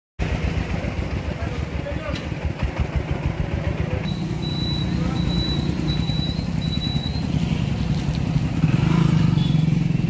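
A vehicle engine running close by, with a low, pulsing rumble that grows louder near the end, and voices in the background.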